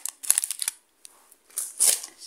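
Clear plastic jewellery bags crinkling as they are handled, in two short crackly bursts with a brief pause between.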